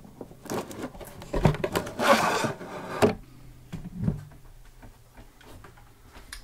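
The plastic media cartridge of an All Pond Solutions 800 HO+ hang-on-back filter is pulled up out of the filter box, plastic rubbing and scraping against plastic. A few clicks and knocks come in the first seconds, the longest scrape about two seconds in, and single knocks near three and four seconds, after which it goes quieter.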